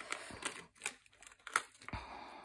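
Clear plastic bag crinkling in the hands while small metal paper clips are taken out of it, with a handful of sharp clicks.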